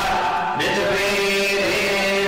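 Many voices chanting a mantra together on long held notes, starting abruptly and stepping to a new pitch about half a second in.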